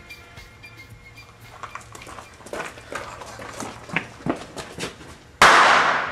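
A firecracker going off among beer cans on gravel with a single loud bang about five and a half seconds in, its noise trailing off over about a second. Before it, scattered light clicks and knocks.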